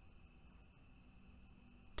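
Near silence, with a faint, steady, high-pitched whine running under the room tone.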